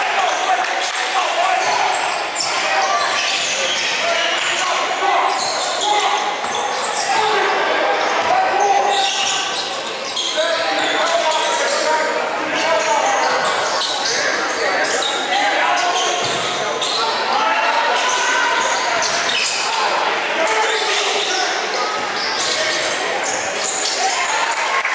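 A basketball bouncing on a hardwood gym floor during play, with players' and spectators' voices throughout.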